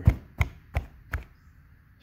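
Four sharp knocks, roughly three a second, as a dirty mechanical fuel pump is tapped down on a workbench padded with paper towel, knocking rust and sediment out of it.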